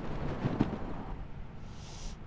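Wind buffeting an outdoor microphone: a low rumbling noise in strong gusts that eases off toward the end.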